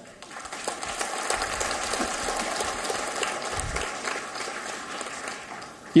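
Audience applauding in a large hall: dense, steady clapping that swells within the first half second and tails off slightly near the end.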